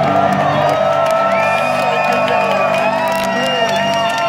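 Live psychedelic rock band playing through the club PA, with long sustained, sliding tones over a steady low drone. The audience whoops and cheers over it, with a few scattered claps.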